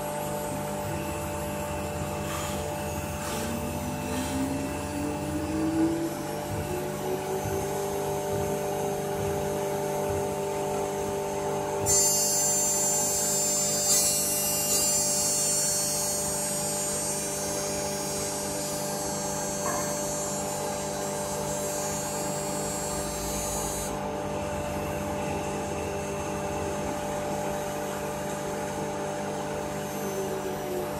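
The twin spindles of a double-head CNC wood router run with a steady high machine whine. A tone rises in pitch a few seconds in and then holds. About twelve seconds in, a brighter, very high-pitched sound comes in suddenly and cuts off just as suddenly about twelve seconds later.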